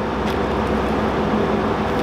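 A machine running steadily, a low even hum that holds one pitch throughout.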